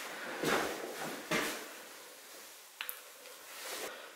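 A few soft scuffs about a second apart and one short light click near the end, the noise of a person moving about and handling things in a small room.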